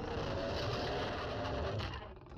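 A low, steady rumble from the anime's soundtrack as a giant monster looms, with a few faint held tones above it.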